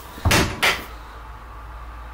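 Two short knocks within the first second, about half a second apart, like a door or cupboard being bumped, followed by a low steady room hum.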